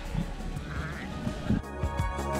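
Sheep bleating from a large flock, heard over background music; the music goes on alone in the last half second.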